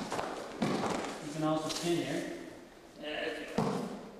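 A person's short vocal sound, not words, about a second and a half in, then a sharp thud about three and a half seconds in as a body lands on the training mat during an aikido throw.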